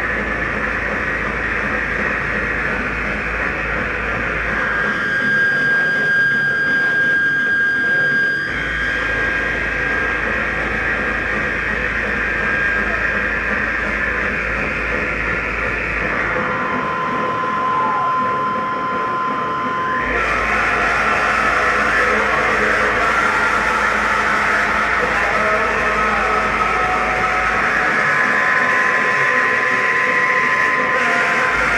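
Live power-electronics noise: a loud, dense wall of distorted noise and drone with steady whistling tones held over it. Its low rumble cuts out and comes back in sections a few seconds long.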